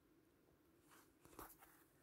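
Near silence: room tone, with a faint, brief rustle of embroidered fabric being handled a little past the middle.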